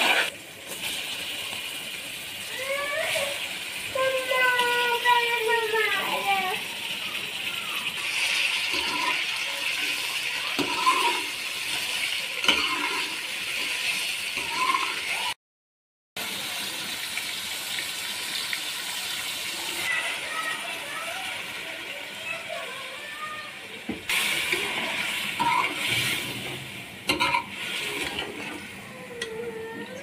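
Hot oil sizzling in an aluminium wok, first as sliced onions fry, then as pieces of meat fry after a brief break about halfway through.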